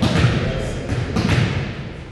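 Volleyball being struck during a rally: two dull thuds of hands on the ball, about a quarter second and a second and a quarter in, over the voices and general din of a large gymnasium.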